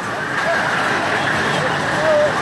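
Small caterpillar-themed kiddie roller coaster's cars running along their steel track: a steady rolling noise, with voices over it.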